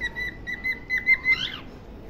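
Cockatiel whistling a string of short notes on one steady high pitch, with a brief higher squeak a little past halfway.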